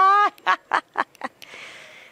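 A woman laughing gleefully: a drawn-out rising note, then a string of short breathy laugh bursts that die away into a soft hiss near the end.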